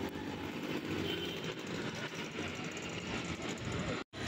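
Steady ambient background noise of a busy open-air place, a low rumble with hiss above it and no single clear source standing out.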